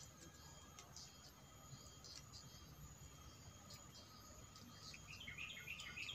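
Near silence with faint outdoor background hiss; about five seconds in, a small bird starts chirping in a quick run of short high calls.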